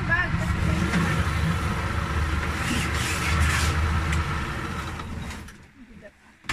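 A small boat's motor running with a steady low throb, along with the wash of the hull moving through the water. The sound fades out about five and a half seconds in.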